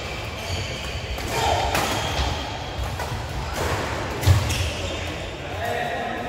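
Badminton play in a large indoor hall: sharp racket hits on the shuttlecock and players' feet thudding on the court, the loudest thump about four seconds in, with voices calling in the background.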